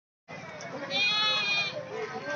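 A goat bleating once, a single high call of under a second that starts about a second in, over the murmur of a crowd.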